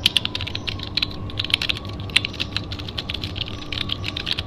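Rapid, irregular keyboard-typing clicks: a typing sound effect that goes with an on-screen caption being typed out.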